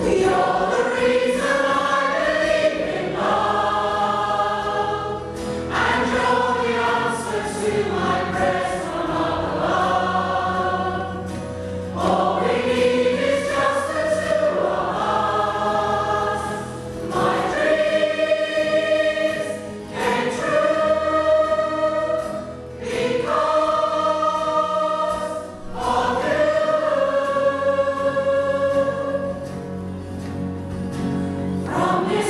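Large mixed choir of men and women singing a slow pop ballad in a church, in long held phrases with short breaths between them.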